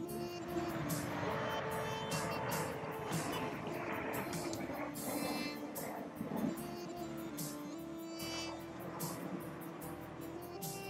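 Jet noise from the Red Arrows' formation of BAE Hawk jets passing: a rushing sound that builds at the start, holds for several seconds and fades about seven seconds in. Music plays throughout.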